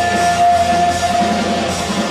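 Live hard rock band playing loud, with electric guitar and drum kit, and one long held note that fades shortly before the end.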